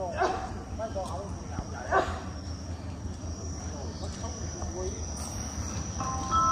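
A dog barking twice, about two seconds apart, over a low steady rumble and distant voices.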